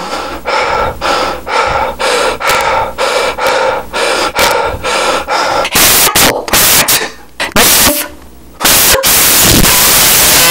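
A high-pitched cartoon voice, heavily distorted and clipping from being right on the microphone, repeating a short sound about twice a second for the first half. After that come a few separate loud blasts, and near the end a steady harsh, static-like roar.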